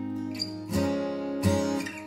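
Acoustic guitar strumming chords: a chord rings and fades, then is struck again just under a second in and once more about half a second later.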